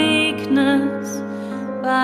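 Slow ballad: a woman's singing voice holds and bends a note in the first half second, then the soft instrumental backing track carries on alone, a little quieter, until the end.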